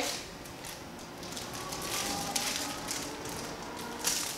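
Faint rustling and light crackling of something being handled, quiet and irregular throughout.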